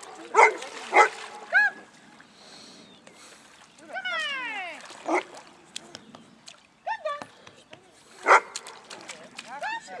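Newfoundland dog barking twice in quick succession, then whimpering in short high tones with one long falling whine about four seconds in. It is reluctant to jump out of the inflatable boat despite being called.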